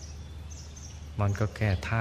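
A man's calm voice leading a Thai meditation pauses, leaving a steady background hiss and low hum with a few faint high bird chirps. The voice resumes about a second in.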